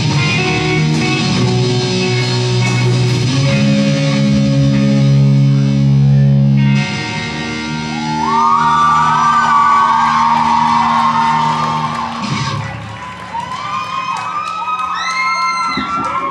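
Live rock band playing the closing chords of a song on electric guitar and drums, held and ringing until they stop about twelve seconds in. Audience shouts and whoops rise over the last chords and carry on after the music ends.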